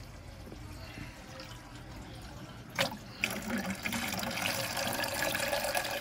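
Water poured from a bucket into a jar already partly full of water, a steady splashing stream that starts about three seconds in, just after a single knock. Lake water is being added to the jar of caught fish so its temperature matches the lake and they avoid thermal shock.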